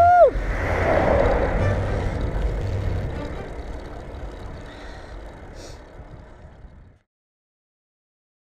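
Wind buffeting a bike-mounted camera's microphone, with rumble and road noise from cycling, fading out gradually to silence about seven seconds in.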